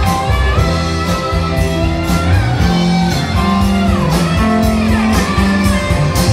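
Live rock band playing: electric guitars and electric bass over drums, with a lead line gliding up and down between notes.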